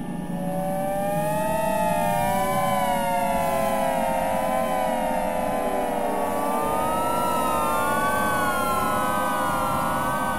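Layered electronic synthesizer tones that waver slowly up and down in pitch like sirens, several at once. They enter about half a second in over a steady low noisy drone. Partway through, the upper tones drift higher while the lowest one slowly sinks.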